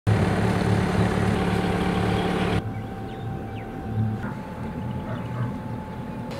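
Sailboat's engine running with a steady low throb. About two and a half seconds in, the sound turns quieter and duller.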